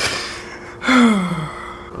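A man's audible sharp breath, then a long voiced sigh that falls in pitch.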